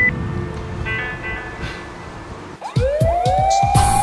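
Background music, then, about three quarters of the way in, Japanese police car sirens start up: two wails, one just after the other, each rising and then holding a high note, louder than the music.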